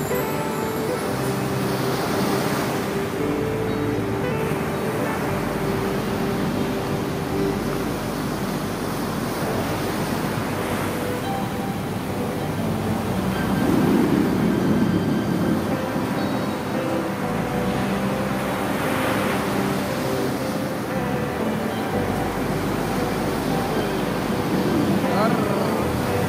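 Background music with held notes over the steady wash of surf breaking on the shore, the surf swelling every few seconds and loudest a little past the middle.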